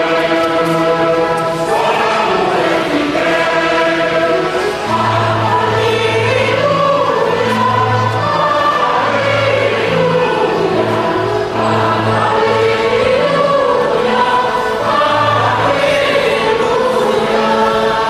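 Church choir singing a hymn, with low bass notes joining about five seconds in.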